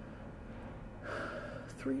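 A pause in talk with faint room hiss, then an audible intake of breath about a second in, as a woman breathes in before she speaks again.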